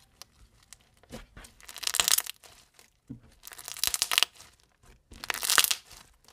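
Crunchy slime packed with foam beads being squeezed and folded by hand: three bursts of dense crackling, about a second and a half apart, with a few small clicks between them.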